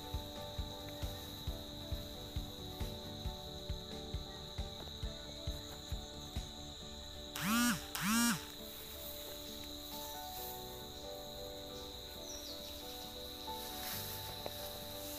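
Insects chirring steadily on one high note, over sustained tones and an even thump about twice a second in the first half. A little over halfway through come two loud, short cries that rise and fall in pitch, close together.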